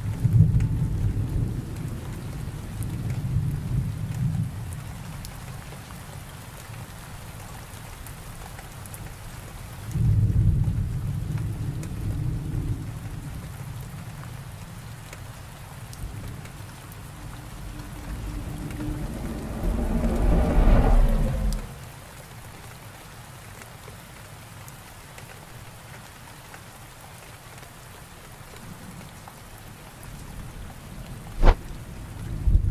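Steady rain with rolls of thunder: a low rumble at the start, another about ten seconds in, and the loudest around twenty seconds in, which cuts off suddenly.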